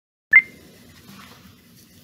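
A single short electronic beep about a third of a second in, with a faint steady tone trailing on for over a second, then quiet room tone.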